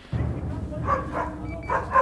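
Dogs barking, with music playing in the background.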